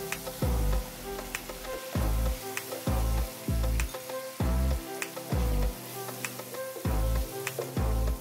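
Sliced pork and garlic sizzling in hot oil in a nonstick electric skillet, with a wooden spatula scraping and tapping against the pan as it is stirred. Background music with a deep, repeating bass beat plays over it and is the loudest part.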